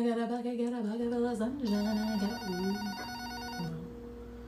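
A woman singing casually to herself, without clear words. From about halfway through, a telephone rings over her voice with a fast electronic warble; near the end her singing stops and a steady tone remains.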